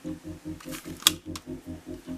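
A few short plastic clicks from handling a hot glue gun and a small plastic cap, the loudest about a second in. Under them runs a steady low pulsing of about five beats a second.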